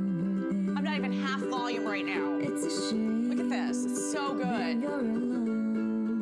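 A song streamed from a phone over Bluetooth, playing turned up through a Studebaker Master Blaster boombox's speakers. It has steady held chords with a voice singing over them.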